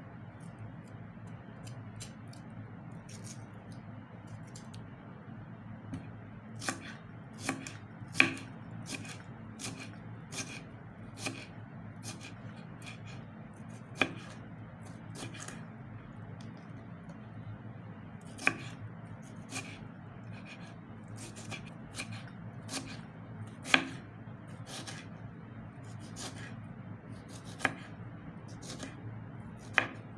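Kitchen knife slicing and dicing a tomato on a wooden cutting board: irregular knocks of the blade on the board, sparse at first and more frequent after a few seconds, a handful of them much sharper than the rest, over a steady low background noise.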